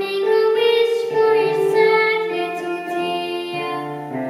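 A young girl singing solo, a melody moving from note to note, with keyboard accompaniment holding lower notes beneath her voice.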